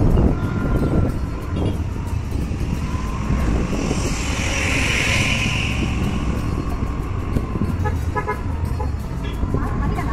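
Road noise from riding a two-wheeler in town traffic: a steady low rumble of engine and wind, with a vehicle horn sounding for about two seconds around the middle.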